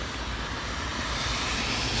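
Road traffic on a wet road: a car's tyre hiss swelling steadily as it approaches.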